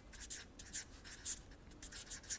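Felt-tip marker writing on paper: a faint, quick series of short scratchy strokes as letters are written.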